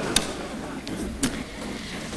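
Hearing-room background noise between roll-call responses: a low, even murmur broken by two brief clicks about a second apart.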